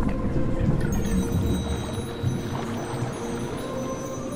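Soft background music: several steady held tones over a low, rumbling bed of sound.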